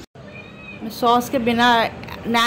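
Speech: a girl whining "nahin, nahin" (no, no) in a high, drawn-out voice, refusing. It starts about a second in.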